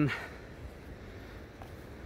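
A man's word trails off at the start, then faint, steady outdoor background noise, mostly a low rumble.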